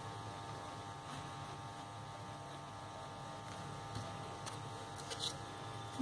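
Steady electrical hum made of several even tones over quiet room tone, with a few faint soft clicks and rustles of crepe paper being handled while glue is applied to a petal.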